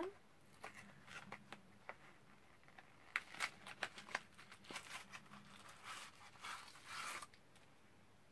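A small cardboard box of incense sticks being opened by hand: scattered light clicks and short rustles of card and packaging, with longer rustles about three seconds in and again around six to seven seconds.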